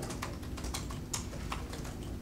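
Computer keyboard typing: irregular light clicks, several a second, over a low room hum.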